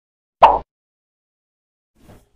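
A single short, loud sound effect about half a second in, lasting roughly a quarter of a second.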